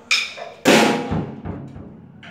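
Drum kit played: a lighter hit at the start, then about half a second later a louder bass drum and crash cymbal struck together, the cymbal ringing on.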